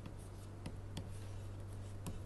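Faint scratching and a few light taps of a stylus writing on a tablet, over a steady low electrical hum.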